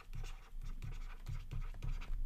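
Stylus scratching across a drawing tablet in quick handwriting strokes, about four a second, as a word is written out letter by letter.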